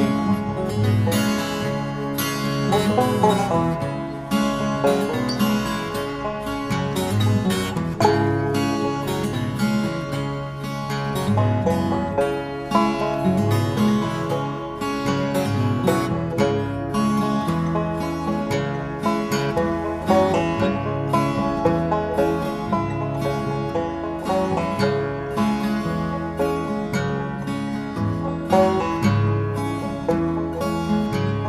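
Instrumental break in a blues song: plucked guitar playing a steady, repeating riff over a low bass line.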